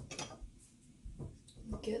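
Faint clinks and light knocks of kitchen utensils being handled on a counter while someone searches for a tool, with a few separate small clicks.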